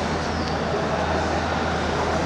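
Steady low rumble and hiss of background noise in a large open-sided hall, with a constant low hum underneath and no distinct events.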